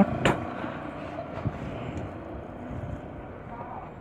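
TVS Flame single-cylinder motorcycle engine idling steadily at a low level, with one sharp click about a quarter of a second in.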